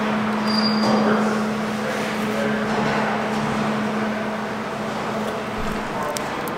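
Steady mechanical hiss and low hum of workshop background machinery, such as a ventilation fan. The hum drops out shortly before the end.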